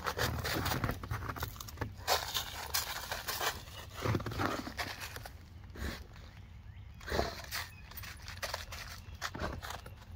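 A Weimaraner snuffling and rooting with its nose in snow-covered dry leaves, giving irregular bouts of rustling and crunching, thickest in the first few seconds and again about four and seven seconds in.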